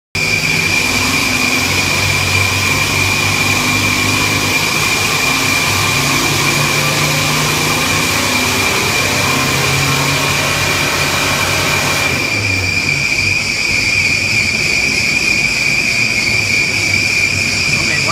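Toyota Hilux turbodiesel engine working hard under load on a Dynapack hub dyno during a power run, with a steady high whine over it. About twelve seconds in, the engine lets off and the run ends, the sound dropping to a lower, quieter running.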